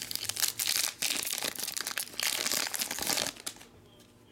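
Foil trading-card pack wrapper crinkling and tearing as it is opened by hand: a dense run of crackles that stops about three and a half seconds in.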